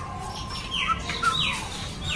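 Bird calls: short whistles sliding down in pitch, a pair about a second in and another half a second later, over a low background hum.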